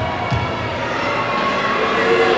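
Steady murmur of an arena crowd during a free throw, with a couple of low thuds near the start as the shooter bounces the basketball on the hardwood floor.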